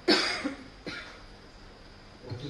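A man coughing close to a microphone: one loud cough right at the start, then a shorter, weaker one about a second in.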